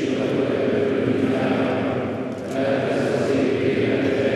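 Choir singing a slow liturgical chant in held notes, with a short break between phrases about two and a half seconds in.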